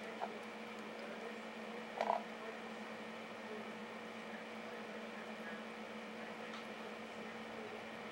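Steady low hum with an even hiss, typical of aquarium equipment running. A brief, sharper sound stands out about two seconds in.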